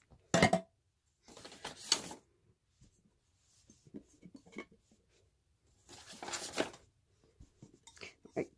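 Empty glass candle jars and their metal lids being handled and set down: a sharp knock just after the start, then clinks and rustling as the jars are moved.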